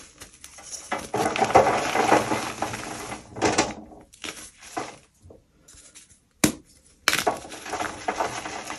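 Blocks of gym chalk crushed and crumbled by hand over a wire rack: dense crunching for a few seconds, then scattered crumbles with chunks clinking onto the metal wires. After a short lull comes one sharp click, then another crunch near the end.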